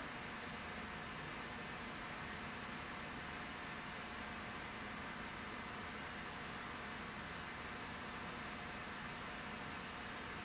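Steady, faint hiss of room tone with a faint hum, unchanging throughout, with no distinct knocks or clicks.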